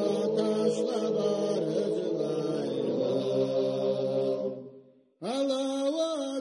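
Slow, chant-like singing with long held notes. One phrase fades out about four and a half seconds in, and after a short gap a new phrase begins on a rising note.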